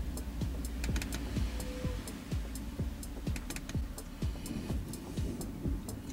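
Laptop keyboard keys clicking irregularly, a few presses a second, over a steady low hum.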